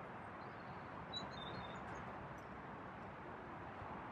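Quiet outdoor ambience with a steady faint hiss, and a few short, high bird chirps about a second in.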